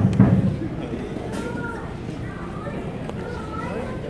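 People talking in the background of a large room, indistinct. A brief low thump comes right at the start.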